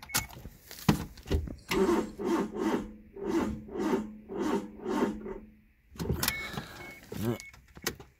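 Suzuki Alto's starter motor cranking the engine on jump-starter boost for about four seconds, in an even pulsing rhythm of two to three beats a second, without the engine catching.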